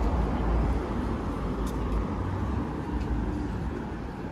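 City street traffic: a low engine rumble from passing vehicles, loudest in the first two seconds and then easing, over general street noise, with a brief click about halfway through.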